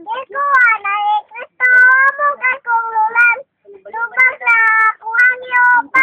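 A young girl singing unaccompanied in a high, clear voice, holding long notes in phrases with a brief pause about three and a half seconds in.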